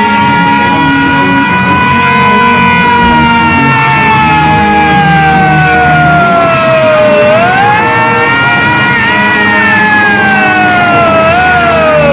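A young man singing one very long, high held note over a rock band of electric guitars and drums. The note sags slowly in pitch, swoops back up about seven seconds in, and bends again near the end. The drums and cymbals get busier about six seconds in.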